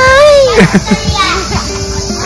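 A young girl calling a long, drawn-out "bye-bye" whose pitch drops sharply at the end, followed by a few short laughs, over background music.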